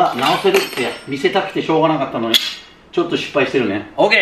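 Bicycle tyre being worked off its metal rim by hand, with metallic clinks and one sharp click a little over two seconds in, the tyre coming free. A man's voice, words unclear, runs over most of it.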